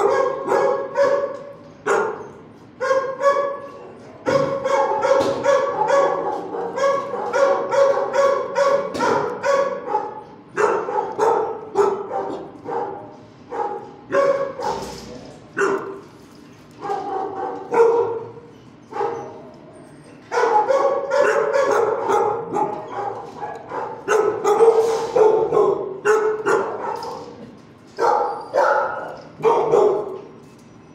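Shelter dogs barking in kennels: runs of quick barks, several a second, broken by short pauses.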